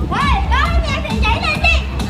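Children's high voices over loud music with a heavy bass beat. The voices rise and fall sharply in pitch.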